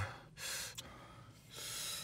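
Two hard breaths of air drawn and puffed through the mouth, about a second apart, from a person cooling a mouth burning from hot sauce.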